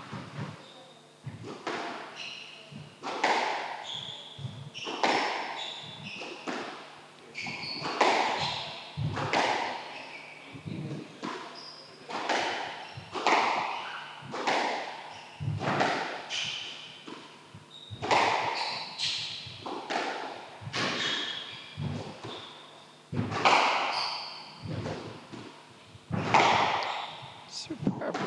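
Squash rallies: the ball is struck by rackets and hits the court walls, a sharp knock every half second to a second, ringing in the enclosed court. Between the hits come short high squeaks of court shoes on the wooden floor.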